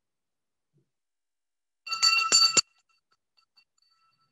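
A small bell rung about two seconds in: a few quick strikes within under a second, each with a bright ringing tone at several pitches. The ring cuts off suddenly, and a faint ring lingers briefly.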